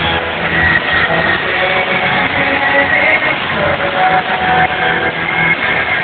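Live rock band music played loud in a concert hall, with guitar, recorded from the crowd on a camera microphone that gives it a dull, narrow sound.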